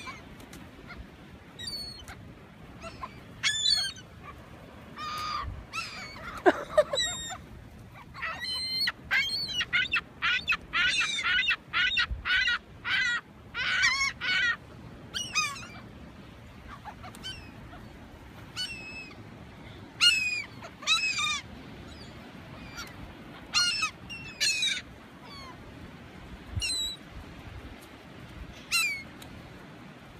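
A flock of gulls calling over and over with short, harsh cries, many of them falling in pitch. The calls come thickest in a run of rapid, overlapping cries toward the middle as the birds crowd in for food being handed out.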